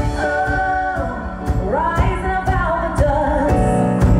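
A woman singing live with a band, holding long notes that slide up and down in pitch over keyboard and drum accompaniment.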